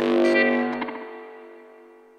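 Recorded post-punk music ending: a distorted electric guitar chord is struck and left to ring, fading away steadily over two seconds.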